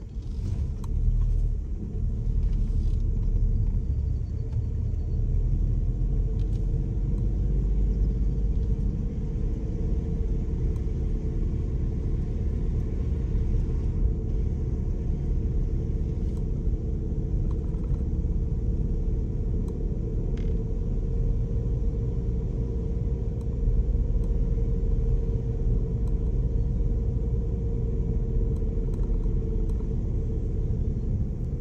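A car driven slowly along a narrow lane, heard from inside the cabin: a steady low engine and road rumble with a faint hum and the occasional faint click.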